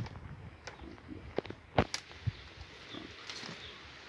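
Stiff japicanga stems clicking and cracking as they are bent and woven into a basket: a few sharp cracks, the loudest just under two seconds in, over a faint low background.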